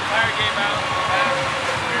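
Brief snatches of talking over a steady rush of road traffic from the interstate.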